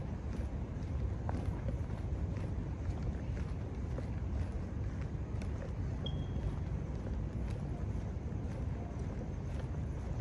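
Footsteps of the walker wearing the body camera, a steady stride on pavement, over a low steady rumble of street and microphone noise. One brief high chirp sounds about six seconds in.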